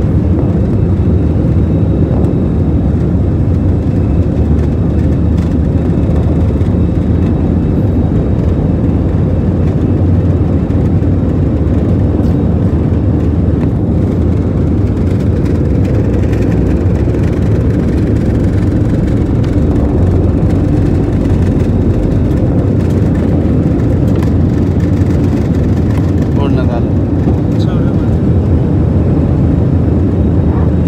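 Jet airliner engines at takeoff power, heard inside the cabin: a loud, steady rumble through the takeoff run and the climb away from the runway.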